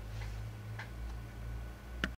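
Steady low hum with three faint, irregular clicks: background noise of the recording after the reading voice stops.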